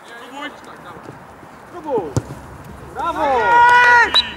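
Football players shouting on the pitch, with a sharp thud of a kicked ball about two seconds in. Near the end comes a loud, long, high shout that celebrates a goal.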